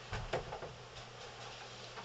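A few faint, short clicks in the first half-second, over a steady low hum.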